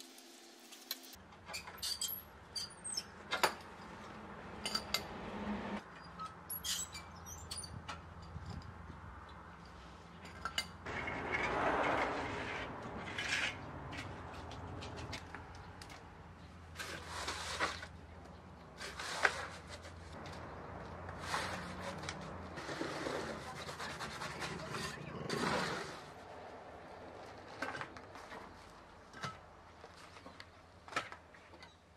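Manual building work: gritty scraping and shovelling of sandy soil and gravel in a plastic mixing tub, in several stretches, with scattered sharp clinks and knocks of steel tools and rebar.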